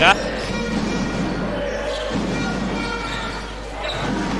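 Basketball arena sound during play: crowd noise and a fans' brass band holding sustained notes in the stands, with the ball bouncing on the court.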